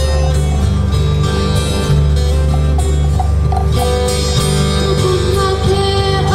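Live Hawaiian song played on acoustic guitar and ukulele, with sung notes held over the strumming.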